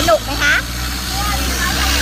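Boat engine running steadily with a low drone, under a constant hiss of wind and water.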